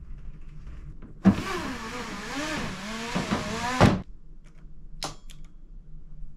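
Capsule's sliding screen door being slid open along its track, a scraping, squeaking slide with a wavering pitch lasting about two and a half seconds, ending in a knock as it reaches its stop. A short click follows about a second later.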